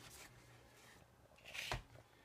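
Handling noise: faint rustling, then a brief louder scrape and thump about one and a half seconds in, as the camera and the wired antenna tracker are picked up and moved, over a faint steady low hum.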